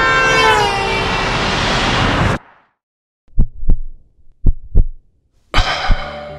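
A loud horn blares over a rush of traffic noise, its several tones sliding down in pitch. It cuts off abruptly about two and a half seconds in. After a moment of silence come two cartoon heartbeats, each a pair of low thuds, and then sound swells back in just before the end.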